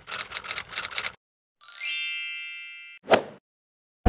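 Title-card sound effects: a quick run of sharp clicks, like typing, then a bright chime that sweeps upward and rings out for over a second, then one short sharp click.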